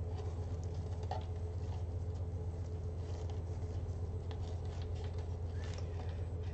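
Faint rustling and light ticks of fabric deco mesh, ribbons and a wreath sign being handled and shifted, over a steady low hum.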